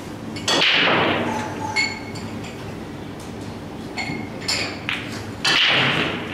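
Pool balls clacking on an 8-ball table: two loud hard hits about five seconds apart, each ringing out briefly, with several lighter ball clicks in between.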